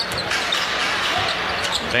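Basketball bouncing on a hardwood court over a steady arena crowd murmur.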